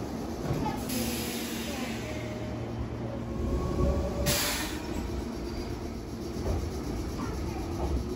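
Meitetsu electric train moving along a station platform: a steady rumble of wheels on rail with a faint whine, and a short burst of hiss about four seconds in.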